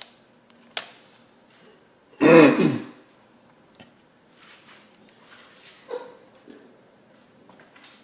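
A man gives a single short throat-clearing cough about two seconds in, the loudest sound here. Around it are a few faint clicks and rustles.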